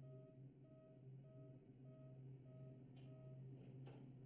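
Faint car warning chime: six even beeps, about one and a half a second, over a steady low hum, with two sharp clicks near the end.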